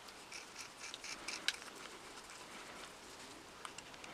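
Light clicking from the greased gearbox gears of a Black & Decker DNJ 62 drill being turned by hand. There is a quick run of small clicks in the first second and a half and a couple more near the end.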